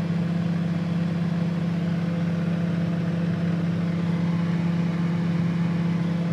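Microwave oven running with a steady low hum.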